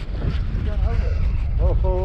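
Steady, uneven low rumble of wind buffeting the microphone, with short vocal exclamations from a man and a drawn-out "oh" near the end.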